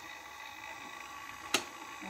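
A light switch clicks once, sharply, about one and a half seconds in, over a faint steady room hum.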